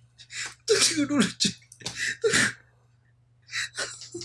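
A man laughing helplessly in a string of breathy bursts. About a second in, one burst carries a high, squeaky voice that slides down in pitch. There is a short pause near the end before two more bursts.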